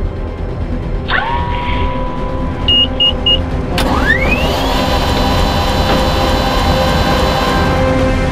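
Helicopter start-up sounds over background music. Three short high beeps sound near the middle. Then a click and a turbine whine rising in pitch and settling to a steady high tone, as the helicopter's turboshaft engine spools up.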